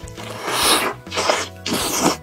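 Close-miked bite into a soft-bun burger and chewing, heard as three loud noisy bursts over background music.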